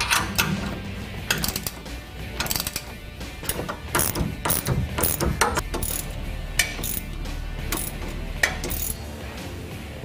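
Hand socket ratchet clicking in short uneven runs as sway-bar mounting bolts are tightened, a wrench holding the nut on the other side.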